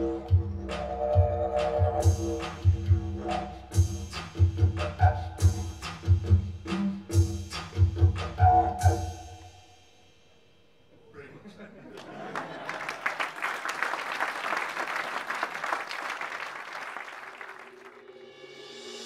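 Looped live mix of a PVC didgeridoo drone over a steady electronic drum beat, which stops about nine seconds in. After a short pause, audience applause fills the rest.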